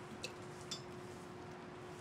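Quiet background hiss with a faint steady hum, and two faint small clicks about a quarter and three-quarters of a second in.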